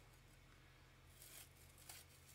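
Near silence with a faint rustle of blue painter's tape being peeled off a tumbler, heard briefly a little over a second in.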